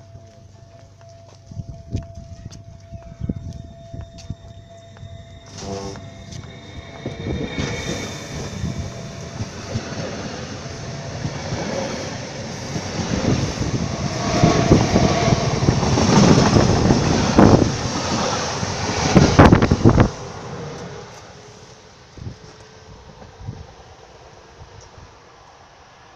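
Stadler FLIRT electric multiple unit passing close by at speed: the noise builds over several seconds into a loud rush with rapid clatter from the wheels, then cuts off suddenly as the end of the train goes by, about twenty seconds in.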